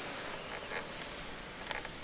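Quiet outdoor background between remarks: a steady faint hiss with a couple of soft ticks.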